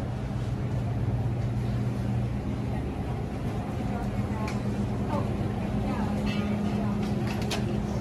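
Indoor market ambience: a steady low machine hum under indistinct background chatter of shoppers, with a few sharp clicks near the end.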